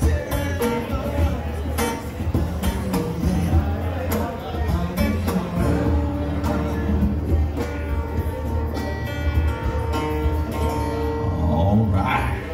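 Live acoustic duo music: a strummed acoustic guitar with conga drums played by hand, keeping a steady groove.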